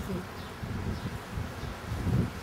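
A steady low buzz through a pause in speech, typical of a flying insect close to the microphone.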